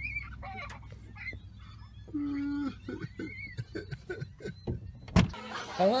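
Gulls calling in short rising-and-falling cries over a car's steady low rumble, with a steady half-second hum about two seconds in. A sharp click near the end cuts the sound off.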